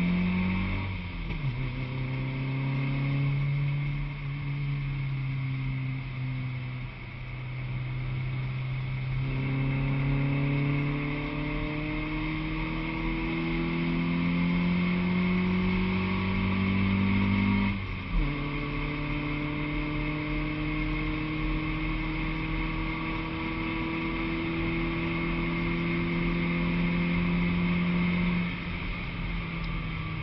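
Honda Civic track car's four-cylinder engine heard from inside the cabin, pulling hard with its pitch rising, stepping down sharply twice as it shifts up, about a second in and again around eighteen seconds with a brief knock, then falling away near the end as it comes off the throttle. A steady hiss of road and wind noise runs underneath.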